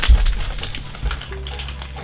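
Crinkling and crackling of a plastic snack bag being handled and tipped up to pour chocolate chips, with a low thump right at the start.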